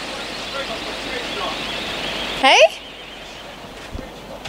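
Steady rushing noise of wind and sea on an open boat deck, which drops away suddenly about two and a half seconds in.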